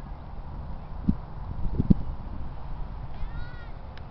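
Outdoor ambience at a youth soccer match: a steady low rumble with two dull thumps about a second apart, then a short high-pitched cry near the end.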